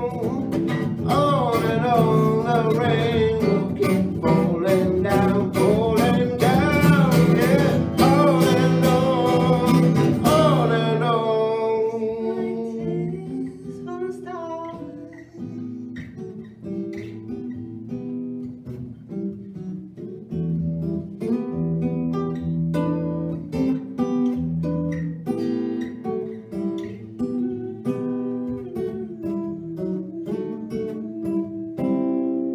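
Steel-string acoustic guitar strummed under singing with wide vibrato. About ten seconds in the singing stops and the guitar carries on alone, quieter, picking out separate notes and chords.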